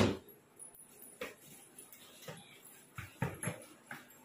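Light, irregular taps on a hard tiled floor, about six spread over a few seconds, following a loud brief rustle that dies away just after the start.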